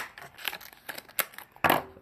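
Fishing-lure packaging of plastic and cardboard being handled: scattered small clicks and crinkles, with a louder rustle near the end.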